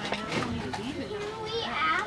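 Children's voices and chatter in the background, with no clear words.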